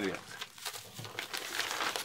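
Plastic postal envelope and bubble wrap crinkling and rustling in the hands as a bubble-wrapped TV remote is slid into the envelope, in irregular crackles.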